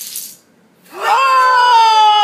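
Plastic dominoes clattering as they topple on a tile floor, dying out about half a second in. About a second in, a child's long, high-pitched wail that slowly falls in pitch: a cry of disappointment that the domino chain has stopped short.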